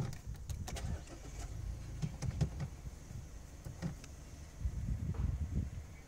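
Mazda 3 engine being started and running, heard from inside the cabin as a low rumble, with a few light clicks scattered through.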